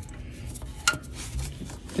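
Small handling noises as a blue polyurethane diff breather hose is pulled down through plastic clips and a heat shield under a car, with one sharp click about a second in.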